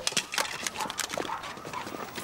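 Running footsteps on pavement: quick, irregular steps, several a second.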